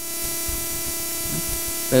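A steady electrical hiss with a buzzing hum under it. It starts suddenly and cuts off after about two seconds.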